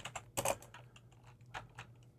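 Typing on a computer keyboard: a few scattered keystrokes, with a quick run of taps about half a second in and a couple more later.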